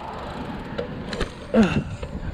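Steady rushing ride noise from a Trek Dual Sport 2 hybrid bicycle being pedalled hard into a wheelie on asphalt, with a couple of sharp clicks just past the middle. Near the end comes a brief vocal sound from the rider, falling in pitch.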